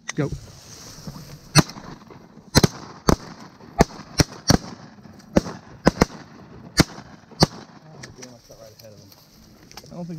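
Several shotguns firing in a ragged volley: about a dozen sharp shots, irregularly spaced, starting about a second and a half in and thinning out after about seven seconds. A shouted "Go!" comes right at the start.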